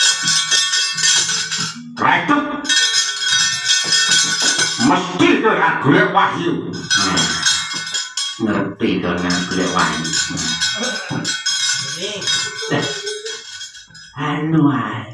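Repeated bursts of bright, ringing metallic clanging from a wayang kulit dalang's kecrek, the metal plates struck against the puppet box, alternating with a man's voice speaking or chanting in between.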